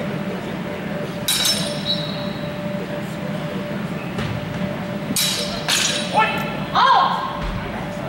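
Steel longsword blades clashing in a fencing bout: one ringing clang about a second in, then two quick clashes just after five seconds.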